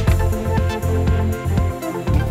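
Instrumental news-bulletin theme music playing under the programme's logo ident, with sustained notes over a strong, steady bass.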